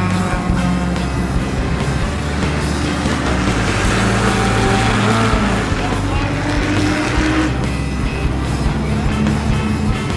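Race cars running on the circuit, the sound swelling as a car passes in the middle and falling away after, mixed with background music.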